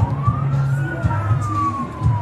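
A single high whistle-like tone rises in the first second, then slowly falls, over steady low notes of parade music.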